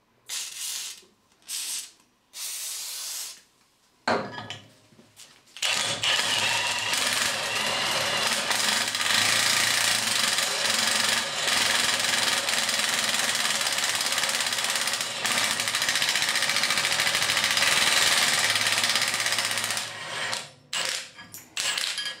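Aerosol cutting lubricant sprayed in a few short bursts, then a Milwaukee M18 Fuel cordless impact wrench hammering continuously for about fourteen seconds as an impact step cutter bores a pilot hole in thick steel plate out to 16 mm. A few short bursts from the tool come near the end.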